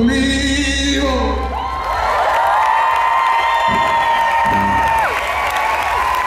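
A live song's final sung note and hollow-body electric guitar chord end about a second in, then the crowd cheers with several long, rising whoops.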